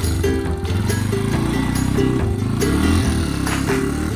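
Background music over a farm motorbike's engine pulling away, its pitch rising about two seconds in as it speeds up.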